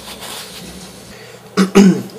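A man clearing his throat, loud and brief, near the end; before it only faint room noise.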